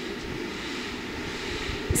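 Steady low background hum with a faint hiss and no speech: the room tone of a large hall, with a short click near the end.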